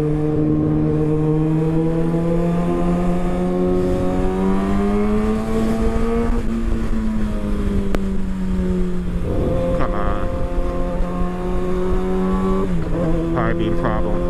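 Kawasaki Ninja ZX-6R 636 inline-four engine pulling under throttle in one gear. Its pitch climbs steadily for about six seconds, eases back, holds steady, then drops once near the end. Wind noise runs underneath.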